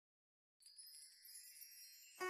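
Silence, then about half a second in faint, high chime-like ringing tones begin, the soft lead-in to the intro music.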